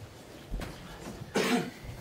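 A single short, loud cough in the committee room about one and a half seconds in, after a low bump near the start, with quiet room tone between.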